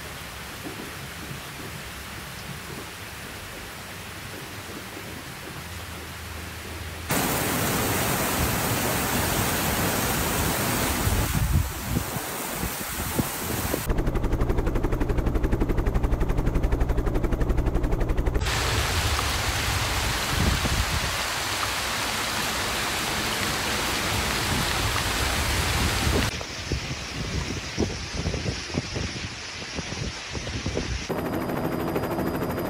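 Heavy rain and wind noise, a steady hiss that changes abruptly in level and tone several times. It is loudest a little past the middle, where a fast low beat runs under the hiss.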